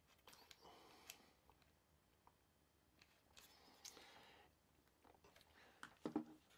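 Near silence with faint handling noise: light scraping and a few small clicks as a carving bit is fitted and the threaded dust-blower nut is turned by hand on a rotary tool's nose.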